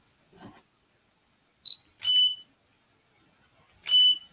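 Short electronic beeps from photo gear: a brief high beep about a second and a half in, then two longer, slightly lower beeps, each starting with a click, at about two seconds and near the end.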